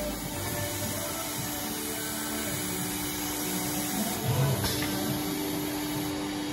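CNC panel drilling machine running steadily while it processes a board: a spindle and drive whirr with a constant hum, and a short low thump about four and a half seconds in.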